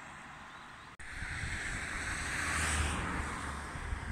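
Outdoor ambient noise with wind rumbling on the phone microphone. It steps up after a short dropout about a second in, swells, then eases near the end.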